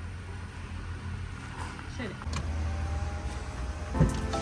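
A car engine idling, a steady low rumble that grows louder a little over two seconds in, with faint voices.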